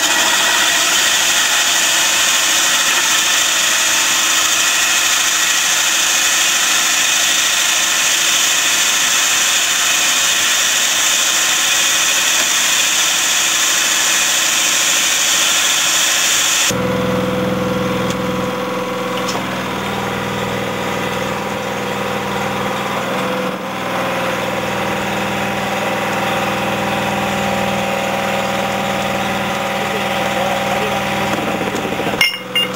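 Excavator-mounted hydraulic core drill boring into rock with water flushing: a steady, high-pitched grinding hiss. A little over halfway through it cuts abruptly to a lower, steadier machine hum with a few steady tones.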